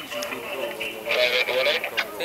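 Men's voices raised in an argument, loudest in the second half, with a steady high tone under the first second.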